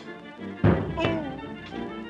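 1930s cartoon orchestral score with a loud thud sound effect about half a second in, followed by a short falling tone.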